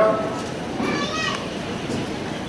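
Background chatter of an audience in a large hall, with a high voice calling out briefly about a second in.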